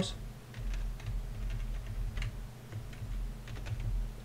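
Typing on a computer keyboard: a string of irregular, quiet key clicks.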